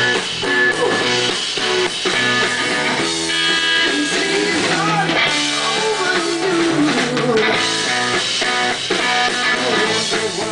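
Live rock band playing without vocals: electric guitar over bass and drum kit, with bent, wavering notes in the middle.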